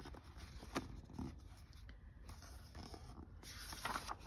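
Faint paper handling of a large book's glossy pages: soft rustles and a couple of light ticks, then a page being turned near the end.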